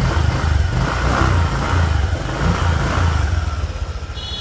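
Honda Vario scooter's single-cylinder engine running close by with an uneven low rumble.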